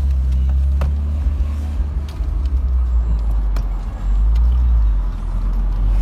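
A car's engine and road noise heard from inside the cabin as it drives: a steady low rumble that eases briefly and then swells again about four seconds in, with a few light clicks.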